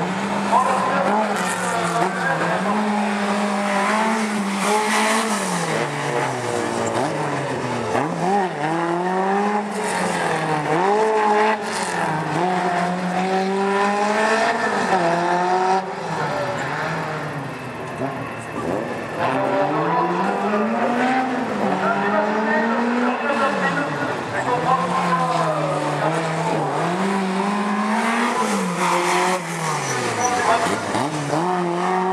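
Alpine rally car's engine revving hard and dropping back again and again as it accelerates and brakes between slalom gates, its pitch rising and falling every couple of seconds.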